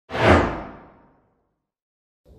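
Whoosh sound effect of a channel logo ident: one sudden swoosh that fades away over about a second, its high end dying first.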